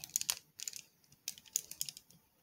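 Light plastic clicks and clatter from a transformable robot figure as its leg joint is moved by hand: a quick cluster of clicks at the start, then another cluster in the second half.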